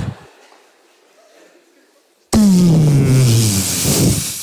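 After about two seconds of quiet, a man's voice suddenly makes a loud, breathy vocal sound effect that falls in pitch and lasts over a second.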